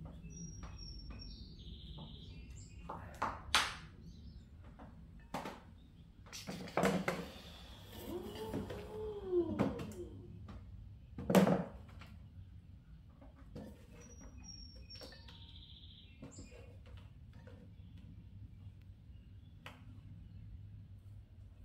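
Scattered knocks and clatter of tools and clay-wet hands on a potter's wheel head and plastic splash pan during clean-up, the two loudest knocks about 3.5 and 11.5 seconds in. Near the middle a drawn-out pitched sound rises and falls, and two short high pips come about 14 seconds apart, over a steady low hum.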